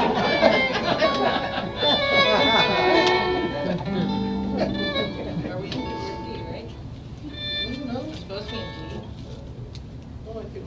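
Acoustic guitar strummed and picked with a few held fiddle notes, a loose unaccompanied run-through rather than a full song, growing quieter over the second half.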